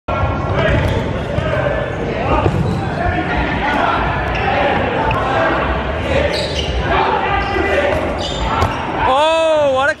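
Rubber dodgeballs thrown and bouncing with sharp smacks on a wooden gym floor during a dodgeball game, under constant player shouting and chatter that echoes in a large hall. A loud yell comes near the end.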